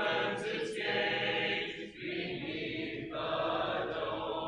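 Congregation singing a hymn a cappella, in held notes without instruments, with a brief break between phrases about two seconds in.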